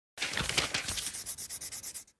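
Scratchy rubbing on paper in quick repeated strokes, like fast sketching or scribbling, cutting off suddenly after about two seconds.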